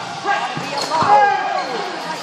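Voices shouting in a large, echoing gymnasium during a sparring match, with one sharp thud about a second in.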